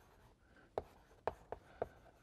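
Faint chalk writing on a blackboard: a few short sharp taps of the chalk in the second half, with light scratching between them.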